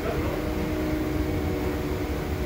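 Steady mechanical hum with a low rumble and a few held tones, like a running room fan or air-conditioning unit, unchanging throughout.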